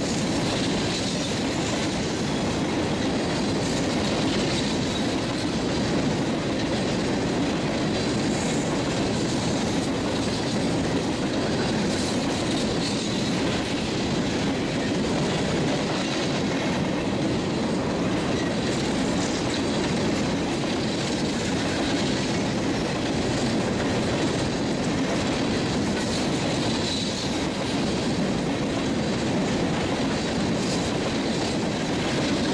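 Union Pacific coal train's loaded open-top hopper cars rolling steadily past close by: a continuous rumble and clatter of steel wheels on the rail.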